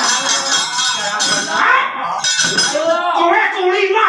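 A wayang kulit dalang's voice calling out in character, over continuous metallic clinking of the kecrek, the metal plates the dalang strikes to drive the puppet action.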